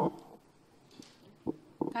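Handling noise on a conference-table microphone: a brief rustle at the start, then a few soft, sharp knocks in the second half.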